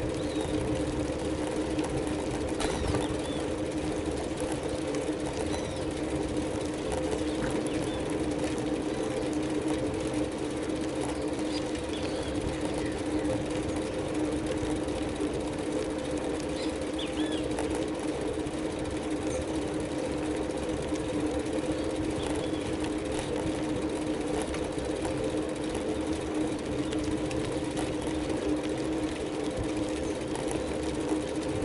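Bicycle rolling along an asphalt road: a steady mechanical hum with road noise that holds at an even pitch and level throughout.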